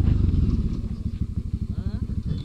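Motorcycle engine running at low revs with an even pulsing beat, gradually fading as the bike rolls to a stop.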